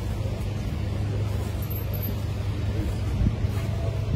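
Steady low hum under a haze of outdoor background noise, with no distinct event standing out.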